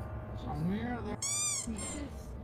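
A frightened person's high-pitched squeal, about a second in and lasting half a second, with a short second squeak after it, among low, anxious voices.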